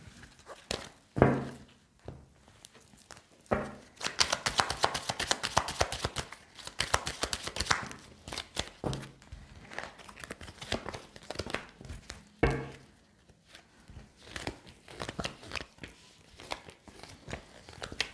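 Tarot cards being shuffled and handled by hand: a dense run of quick papery flicks for a few seconds, then scattered clicks and taps as cards are handled and laid out. Two louder short sounds stand out, about a second in and again past the middle.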